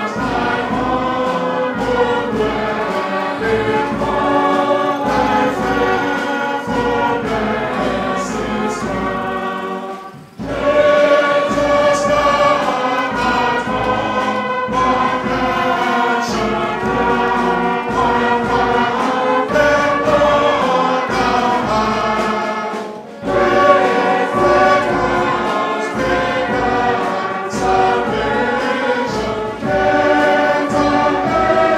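Church congregation singing a hymn together, with two short breaks between lines, about ten seconds in and again just after twenty seconds in.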